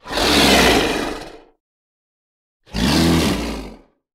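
A big-cat roar sound effect, heard twice: a loud burst at the start lasting about a second and a half, then a shorter one near the end with a rising and falling growl in it.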